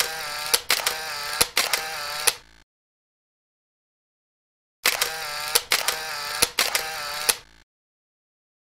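Mechanical camera sound effect: a wavering motor whir broken by sharp clicks, like a camera's shutter and motor drive, played twice about two and a half seconds each, with dead silence between.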